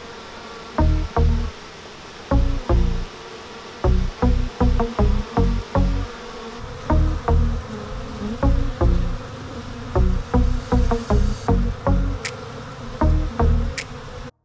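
Honey bees buzzing in a steady hum around a hive entrance, mixed under background music whose short, punchy low bass notes come in an uneven beat and are the loudest sounds.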